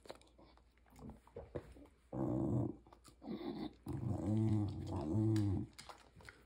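A dog growling low in three stretches, a short one about two seconds in and longer ones near the end, its pitch rising and falling in places.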